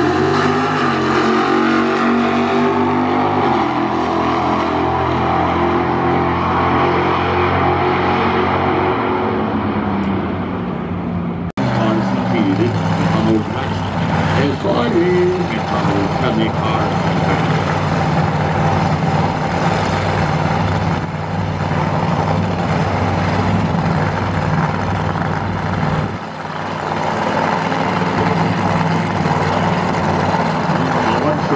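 A V8 drag car's engine, its pitch falling steadily for about ten seconds as the car slows after its run. After an abrupt cut, a loud race engine runs at a steady pitch.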